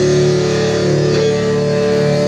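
Live rock band with distorted electric guitars and bass holding a loud, ringing chord, struck again about a second in.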